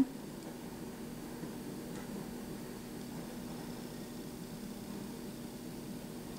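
Quiet, steady background hiss with a faint low hum: room tone, with no distinct event.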